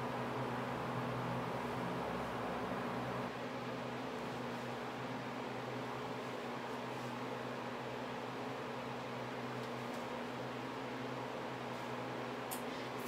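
Steady room noise: a low hum under a soft hiss, dipping slightly about three seconds in.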